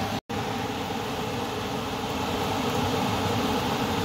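Steady mechanical hum with a few held low tones, like a fan running, cut by a brief full dropout about a quarter second in.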